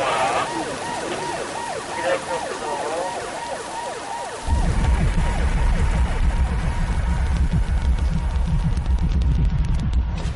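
Police car siren wailing in quick rising-and-falling sweeps. About four and a half seconds in, a loud deep rumble cuts in suddenly and carries on.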